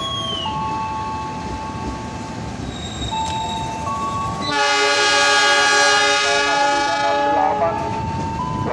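A diesel locomotive's horn sounding. About halfway through, a louder, fuller multi-note blast comes in and is held for about three seconds.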